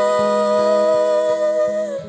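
A young woman's voice holding one long final note of a Polish Christmas song over a soft accompaniment. The note dips slightly and stops just before the end, leaving the accompaniment to ring out.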